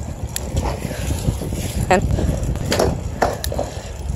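Low rumble of wind buffeting the microphone and tyre noise from a bicycle being pedalled fast over asphalt. There are a couple of sharp clicks and a brief vocal sound or two.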